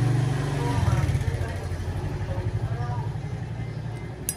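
Steady low engine rumble of a motor vehicle, deepening about a second in, with faint voices in the background.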